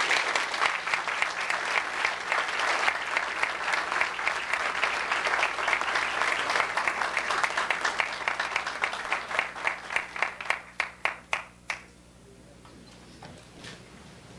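Audience applause: dense clapping that thins after about nine seconds into a few scattered claps and stops about twelve seconds in.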